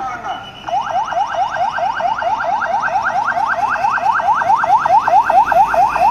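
Vehicle siren in rapid yelp mode: quick rising sweeps repeating about five times a second, starting just under a second in, with a steady high tone above it.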